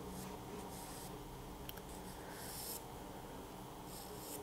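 Graphite pencil sketching on watercolour paper: a few short, faint strokes of the lead across the sheet as cloud shapes are marked out.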